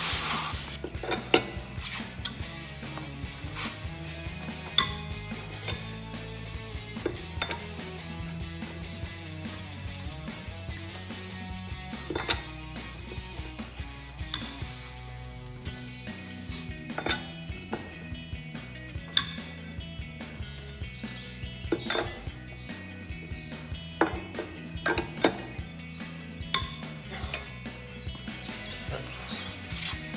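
Metal lug wrench clinking against the wheel's lug nuts as they are broken loose, in sharp separate clinks every few seconds, over background music.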